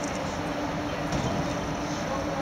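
Steady background noise of a large indoor hall, with a low, even hum under it.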